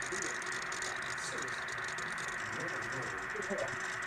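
Steady hiss with faint, distant voices under it.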